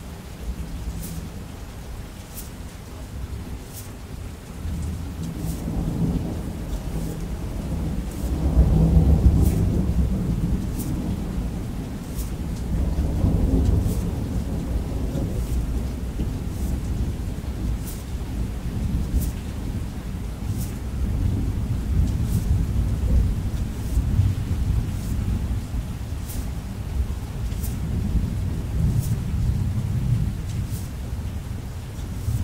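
Thunder rumbling low and long over steady rain, swelling to its loudest about nine seconds in, with a second swell a few seconds later and a continuing rumble afterwards.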